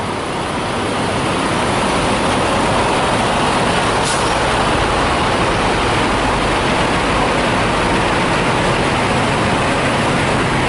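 Steady, loud engine noise from parked semi-trucks running close by, rising slightly over the first second and then holding even.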